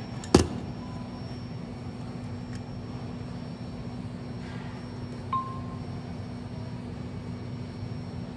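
Steady low hum of an ecoATM phone-recycling kiosk, with a sharp click near the start and a short electronic chime about five seconds in as the kiosk registers the phone's cable as connected.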